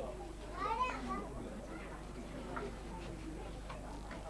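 Indistinct voices of several people talking in a room, with a higher voice rising and falling about a second in.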